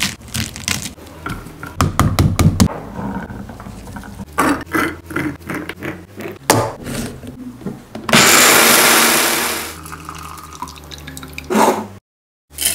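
Ripe pomegranate being pulled apart by hand, the rind cracking and arils tearing loose, with short clicks and crackles as arils drop into a plastic blender jar. About eight seconds in comes a loud, even rush lasting under two seconds that fades away, and a short clatter follows near the end.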